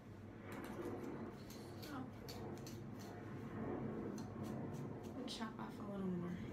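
Scissors snipping through long hair, an irregular run of many short, sharp snips while split ends are trimmed.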